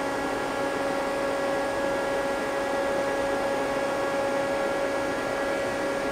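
Steady machine hum from an idling Mazak CNC lathe and its control, with one strong unchanging whine and fainter tones above it over an even hiss. The machine is powered up but not cutting.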